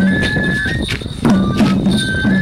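Traditional lion-dance music: a Japanese bamboo flute holding high notes that step up and down, over regular drum beats about twice a second.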